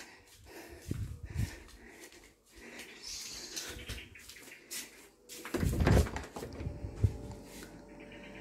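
Knocks and thumps of footsteps and a door being handled while walking through a doorway into a small room, with a louder, low thump about five and a half seconds in.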